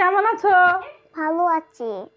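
A young child's high voice singing in drawn-out, sing-song phrases, with short pauses between them.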